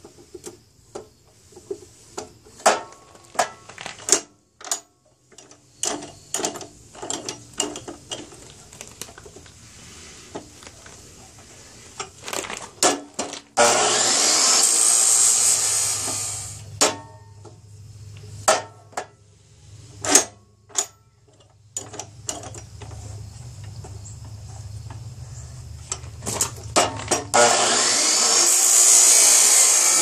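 Clicks and knocks of steel tubing being set and clamped in a DeWalt abrasive chop saw, then the saw's disc grinding through the tubing in two loud spells, one about halfway through and one near the end. A low steady hum runs between the two cuts.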